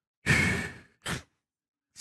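A man's loud, exasperated sigh close to the microphone, a long breath out that fades over about half a second, followed by a short second breath about a second in.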